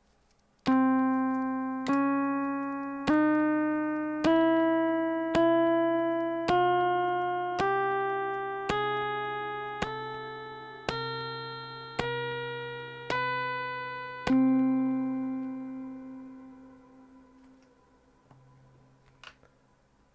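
Meng Qi Wingie2 resonator playing its twelve-note bihexany just-intonation scale upward, one note about every second. Each note is a bright plucked-sounding tone that rings and decays. It ends on the first note again, left to ring out and fade, with a low steady tone sounding beneath the notes throughout.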